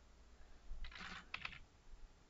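A few faint keystrokes on a computer keyboard, bunched together about a second in.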